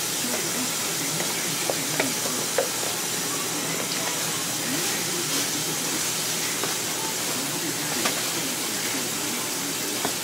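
A steady hiss throughout, with a few light clicks and taps from a cardboard box being handled.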